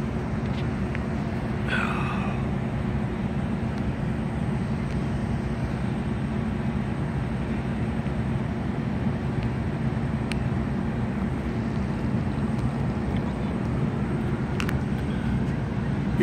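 Steady low rumble of distant city traffic, with a few faint ticks.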